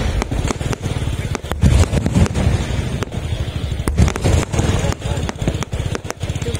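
Aerial fireworks going off: an irregular stream of sharp bangs and crackles from bursting shells over a low rumble.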